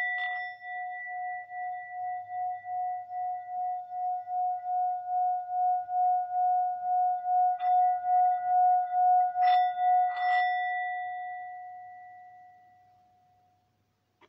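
Metal singing bowl, struck and then rubbed around its rim: a steady ringing tone with a slow wobble of about two pulses a second that swells, then rings out and fades away near the end.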